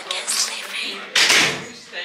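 A shop's glass front door moving: a short rushing burst about a second in, the loudest sound, with quiet voices around it.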